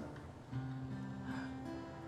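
Soft background music on guitar, with held notes coming in about half a second in.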